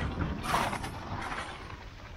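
Skis scraping and carving over groomed snow, with wind rumbling on the microphone; a louder scrape about half a second in.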